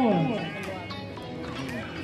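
A man's voice trails off with a falling pitch in the first half second, then quieter background music plays.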